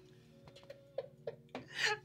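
A woman's soft, brief laughter in a few short bursts, then a sharp breath in near the end.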